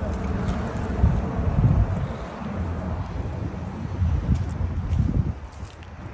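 Wind buffeting a phone microphone outdoors, a low rumble that swells in uneven gusts.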